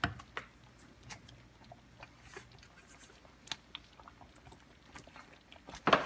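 Faint scattered clicks and small pops, with a sharper click at the start and a louder one just before the end, over a faint low hum.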